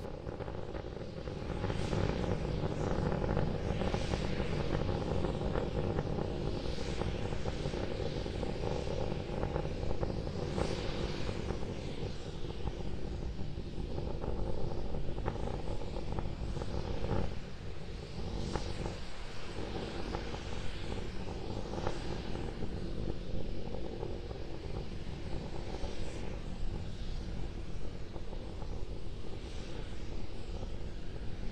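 SpaceX Starship prototype's Raptor rocket engines firing during ascent, heard from the ground as a steady rumble with crackle, now on two engines after a planned shutdown of the third.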